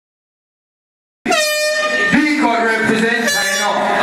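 Silence, then a sudden loud start about a second in: a dancehall sound-system air-horn effect and a man's voice shouting over the club PA.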